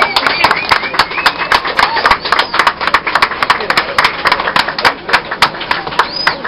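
A small group applauding in the close space of a streetcar car, with quick irregular claps and a few cheering whoops among them. The applause thins out toward the end.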